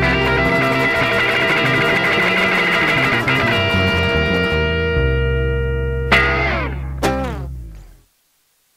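Ending of a rock-and-roll band piece on electric lead guitar, acoustic rhythm guitar and bass: a last busy run settles into a held chord, then two final chords are struck about a second apart and ring out, fading to silence.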